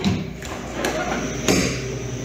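Walk-in freezer door being unlatched and pulled open: a couple of light knocks, then a sharp thump about a second and a half in. A steady low hum of refrigeration equipment runs underneath.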